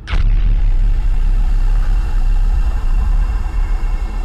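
Dramatic intro sound design for a news bulletin: a sharp whooshing hit right at the start, then a loud, sustained low rumble with steady high tones held over it.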